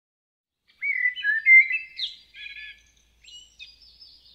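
Birdsong: a bird singing a quick run of short whistled notes and glides, starting just under a second in and growing fainter after the first couple of seconds.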